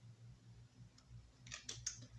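Tarot cards being handled: a faint low hum, then near the end a quick cluster of four or five light, sharp clicks and slides as a card is put down and the next one is drawn from the deck.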